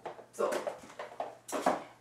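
Rustling and light knocks of cosmetic bottles and packaging being handled on a cupboard shelf, in three short bursts.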